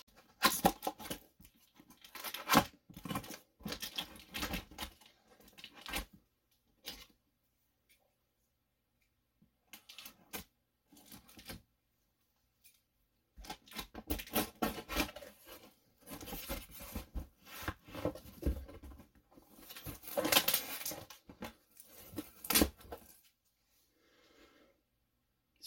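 A cardboard shipping box being opened by hand: packing tape ripped and cut, then the cardboard flaps pulled open, in irregular bursts with a quiet pause in the middle.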